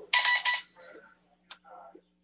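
Two quick electronic beeps, back to back, steady in pitch and loud, about half a second in all, like a device's alert tone; a sharp click follows about a second later.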